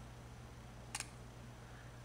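One short, sharp mechanical click about a second in from a homemade haptic actuator, Miga wireless solenoids driving a cantilevered acrylic beam, fired when the finger presses its force sensor. The click is made by a 3 ms pulse, a 50 ms pause and a 1 ms pulse to the coils, and is meant to imitate a laptop trackpad click.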